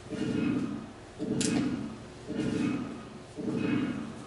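Film sound effect of a pulsed radio signal from space, played over a room's speakers: regular low pulses, about one a second, each lasting most of a second. The pulse groups count out prime numbers. A sharp click comes about a second and a half in.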